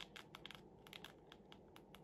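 Faint, irregular clicks of buttons being pressed on an old push-button mobile phone, about a dozen in two seconds.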